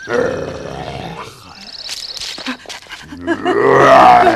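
Cartoon tiger growling and roaring: a growl right at the start, then a louder roar that swells near the end.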